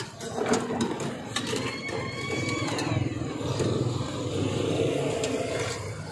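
Street traffic: motor vehicle engines running steadily, with a few sharp clicks early on and a faint high gliding tone about two to three seconds in.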